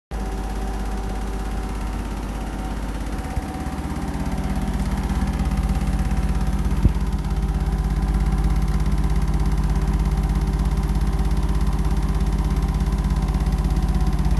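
Hotpoint NSWR843C washing machine spinning its drum at the end of the cycle, in a 1000 rpm spin. It is a steady motor-and-drum hum with a fast, regular pulse that builds slightly over the first few seconds and then holds, with a brief click about seven seconds in.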